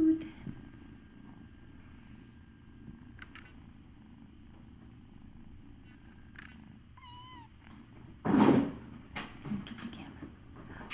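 A kitten purring, a steady low rumble, with a short wavering mew about seven seconds in. Just after it comes a loud, brief rustle of handling close to the microphone.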